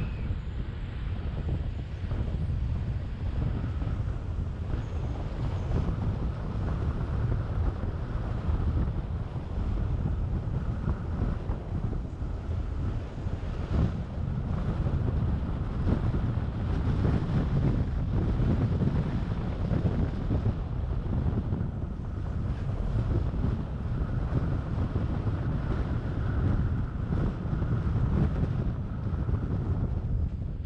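Wind buffeting the microphone of a camera on a moving car, an uneven low rumble, with the car's road noise underneath.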